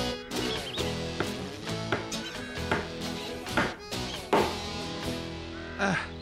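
Hammer knocking nails into a wooden railing, about seven blows roughly a second apart, over background music.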